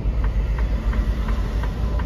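Semi truck's engine and road noise heard inside the cab as it rolls slowly: a steady low rumble with a haze of noise above it, and faint light ticks a few times a second.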